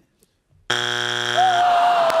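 Family Feud strike buzzer: a harsh, steady low buzz of about a second, starting a little way in, which signals a wrong answer that is not on the board. A long drawn-out "oh" rises over its tail.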